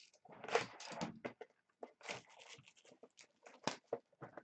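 Cellophane shrink wrap being slit with a utility knife and peeled and crinkled off a cardboard box of trading cards: a loud tearing rustle about half a second in, then scattered crinkles and light clicks, with one sharp click near the end.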